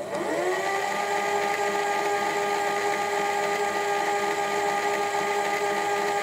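A motor whirring: its hum rises in pitch over about the first second as it spins up, then holds a steady pitch and level.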